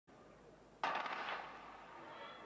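Starter's pistol fired once to start a 100 m sprint: a single sharp crack about a second in that fades over roughly a second.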